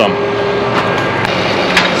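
Tractor diesel engine running steadily, with two light clicks, one a little over a second in and one near the end.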